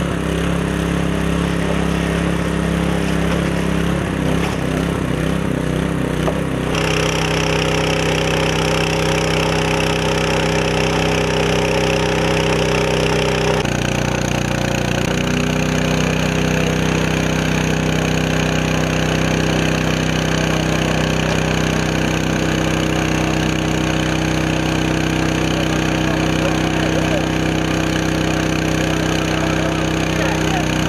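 Small petrol engine of a portable fire motor pump running steadily under load, its note changing in step about seven seconds in and again around the middle.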